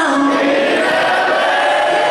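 Several voices singing held notes together in a live performance, with little bass or drum underneath.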